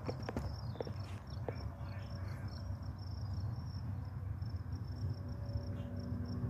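Insect chirping in a steady, evenly pulsing high trill over a low steady rumble, with a few sharp clicks in the first second and a half.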